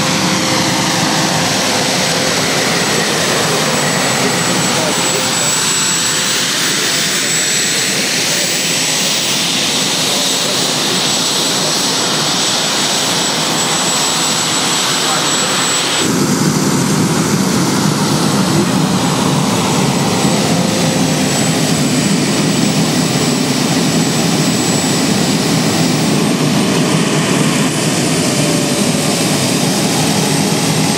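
Turbine engine of a recreated Green Monster front-engine jet dragster running while the car sits at the line: a loud, steady jet roar with a thin high whine. The balance of the sound shifts abruptly about halfway through.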